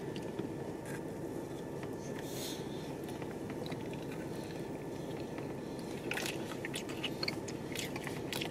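Quiet biting and chewing of a soft oatmeal, peanut-butter and chocolate-chunk cookie, with a few small crunches and mouth clicks, most of them near the end.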